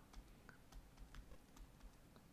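Near silence with a scattering of faint, light ticks: a stylus tapping on a tablet screen as short marks are hand-written.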